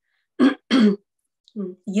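A woman clearing her throat, two short sounds in the first second, before she starts speaking again near the end.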